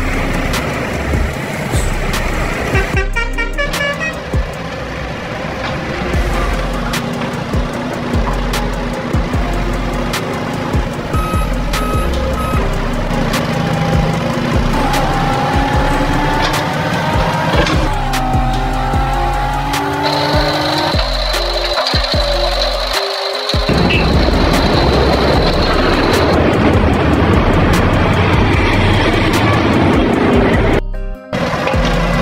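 Cartoon vehicle sound effects, engines running as vehicles drive past, layered over background music. Around the middle an engine whine rises twice, and a steady high whistle runs for several seconds later on.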